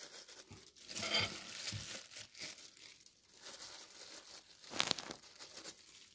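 Disposable plastic glove crinkling faintly as a gloved hand handles raw ground pork, in scattered short rustles, the loudest about five seconds in.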